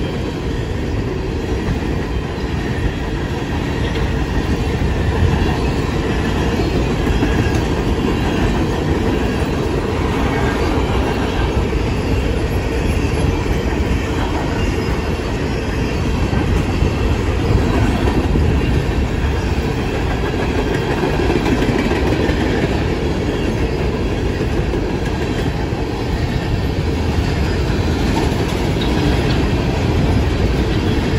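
Empty open-top coal cars of a BNSF Powder River Basin coal train rolling past close by: a steady, heavy rumble of steel wheels on rail with the clickety-clack of wheels over rail joints and the rattle of the empty cars, holding an even level throughout.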